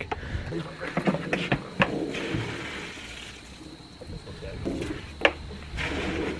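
Orbeez water beads pouring from a plastic bucket into a plastic trough, a wet rushing pour with a few sharp knocks of the bucket against the rim.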